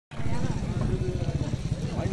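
A vehicle engine running at idle close by, a low, rapid, even pulsing, with people talking in the background.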